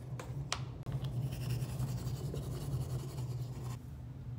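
Two sharp clicks, then a toothbrush's bristles scrubbing rapidly, a fine scratchy sound that cuts off abruptly near the end. A steady low hum runs underneath.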